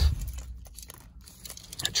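Faint handling noise from a car key and remote held in the hand: light rustling and a few small clicks, after a low thump dies away at the start.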